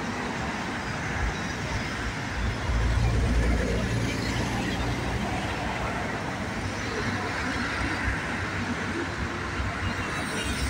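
Busy road traffic: cars, a minibus and a semi-trailer truck driving past at a roundabout, with a low engine rumble that is loudest about three seconds in.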